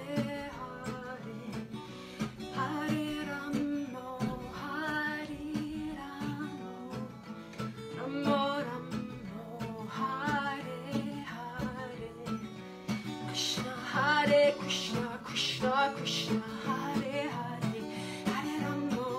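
A woman singing while playing an acoustic guitar.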